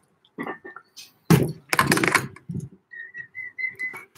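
A person whistling a run of about six short notes, each on a steady pitch and stepping slightly upward, near the end. Two loud, hissing noisy bursts come about a second in.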